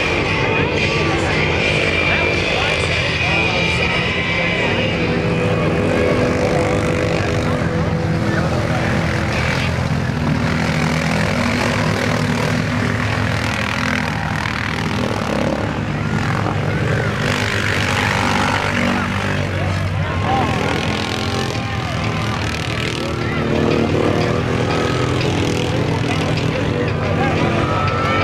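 Several ATV engines revving hard, rising and falling unevenly as the quads churn through deep mud.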